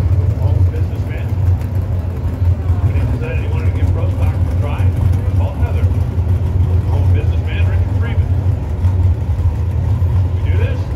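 NHRA Pro Stock drag car's naturally aspirated V8 idling with a steady, loud low rumble, with indistinct voices over it.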